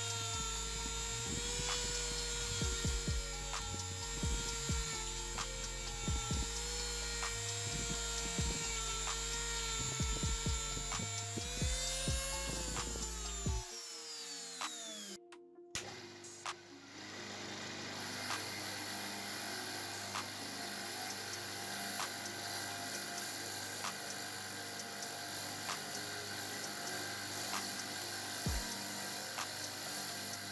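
Small high-speed rotary tool with a fine brush disc whining steadily as it scrubs adhesive off an angle-grinder armature by the commutator, then winding down with a falling pitch. After a brief break, a bench motor spins a brush wheel with a steadier, lower hum.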